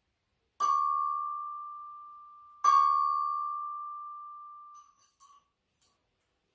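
Handheld chime bar struck twice with a mallet, about two seconds apart; each strike rings one clear tone that slowly fades. A few faint taps near the end.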